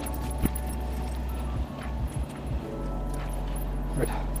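Steady hum of the space station's cabin fans and machinery, with a few light clicks and jingles of harness buckles and straps being fastened.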